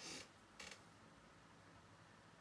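Two quick spritzes from a pump spray bottle, a short hiss right at the start and a second, shorter one just over half a second later, misting to wet the eyeshadow. Near silence follows.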